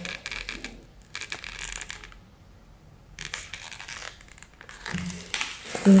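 Paper and parchment wrapping of a dry shampoo pack crinkling and scraping as it is handled, in a few short scratchy spells with a quieter gap about two seconds in.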